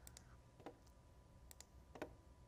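A handful of faint computer mouse clicks, scattered over near silence.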